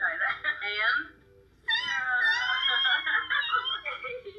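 Young women's voices from a video played back on a screen's speaker: a short burst of talk, a brief pause, then a long stretch of high, excited squealing as they hug.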